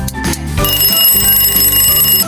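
Cartoon alarm-clock ringing sound effect: a steady, high bell ringing starts about half a second in and carries on for about a second and a half, over background music with a steady beat. It signals that the quiz timer has run out.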